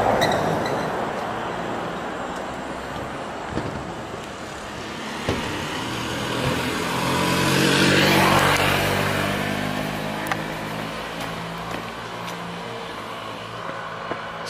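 Road vehicles passing close by: one fades away at the start, then a second comes up with its engine and tyre noise, is loudest about eight seconds in, and fades away.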